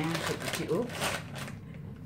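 Crinkling of a plastic Flamin' Hot Cheetos snack bag being handled, a rapid crackle lasting about a second and a half.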